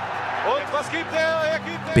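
A raised voice calling out over steady background music.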